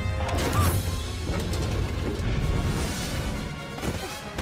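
Orchestral film score with crashing action sound effects.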